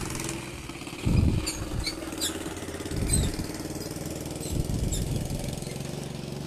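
An engine running steadily, with louder low rumbles about one and three seconds in, and a few faint high chirps over it.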